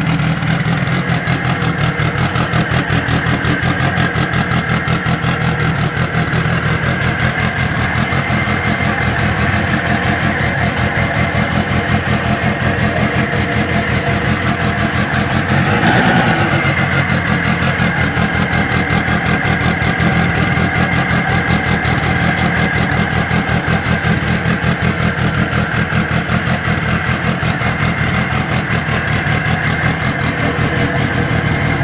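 Turbocharged four-cylinder engine of a Lancia S4 tribute race car running steadily at idle, briefly louder about halfway through.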